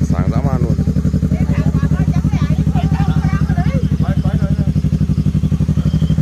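Yamaha R3's parallel-twin engine idling steadily, with a rapid, even exhaust pulse and no revving.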